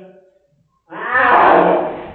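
Domestic cat protesting a spot-on flea treatment: a long pitched yowl trails off at the start, then about a second in a loud, harsh, raspy yowl rises and fades away.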